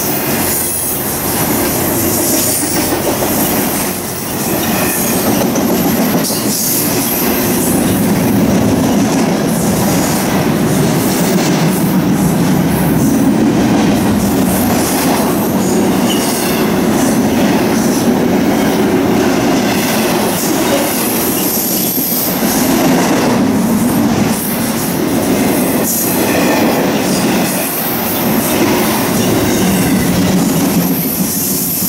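Intermodal freight train's container cars rolling past close by: a steady rumble of steel wheels on rail, with occasional knocks at rail joints and a faint high-pitched squeal that comes and goes.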